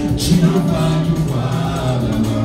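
A man singing a gospel praise song into a microphone, holding long notes over instrumental backing.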